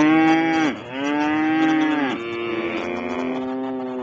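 Cattle mooing: three long moos in quick succession, the first two dropping in pitch at their ends, the third longer and with two voices at once.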